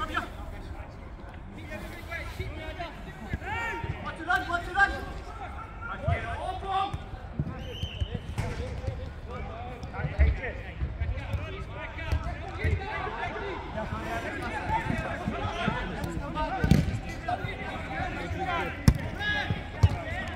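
Players shouting and calling to each other during a five-a-side football game, with the ball being kicked now and then; the sharpest kicks come near the end.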